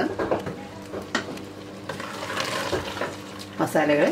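Wooden spoon stirring thick mutton masala in a stainless steel pressure cooker, the masala sizzling on the heat. There are a couple of light knocks in the first half, and the sizzle is strongest in the second half.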